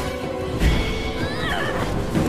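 Film soundtrack: a dinosaur's screeching call over dramatic music. A heavy hit comes about half a second in, followed by a run of rising and falling screeches lasting about a second.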